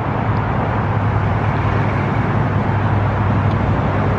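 Steady low rumble of road traffic.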